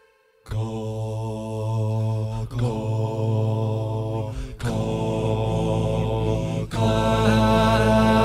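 All-male a cappella group singing sustained wordless chords over a deep bass voice. The voices come in together about half a second in and move to a new chord roughly every two seconds.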